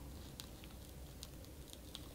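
Faint, scattered crackling ticks of a glitter peel-off face mask film being pulled slowly away from the skin of the forehead.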